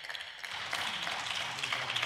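A few people clapping, a small patch of applause that builds up from about half a second in.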